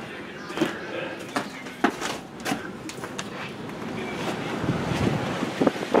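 Gusty wind buffeting the microphone, rising in the second half, with a few sharp knocks in the first half.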